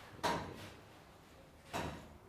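A pause in conversation with quiet room tone: a short murmured 'mm' just after the start and a brief breathy sound about a second and a half later.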